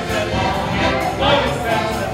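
Polish folk band music: an accordion playing with a bass drum and cymbal, and a group of voices singing along.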